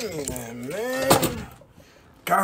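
A man's voice making wordless, sliding vocal sounds whose pitch swoops up and down, with a sharp click about a second in.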